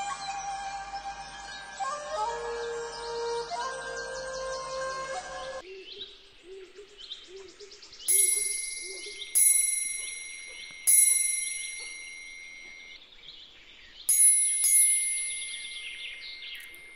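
A short melodic music intro that stops about five seconds in, followed by birds chirping and a chime or bell struck about five times, each strike ringing out with a clear high tone.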